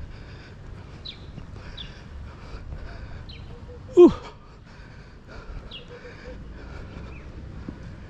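A man breathing hard from walking up a steep hill. About halfway through he lets out a loud, breathless 'ooh' of exertion that falls in pitch.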